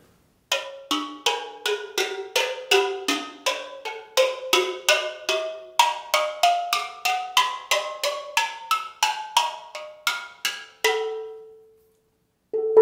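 Unburned steel pan, its notes freshly shaped from the underside before heat-treating, struck note by note with a stick at about three strikes a second, each strike a different pitched ringing tone. The notes sound as separate, distinct pitches, the sign that the shaping has isolated them from one another; the last note rings on alone and fades.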